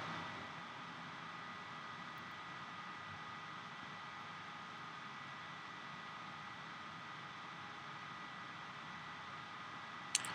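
Faint, steady hiss of room tone and microphone noise with a thin high whine, with no events.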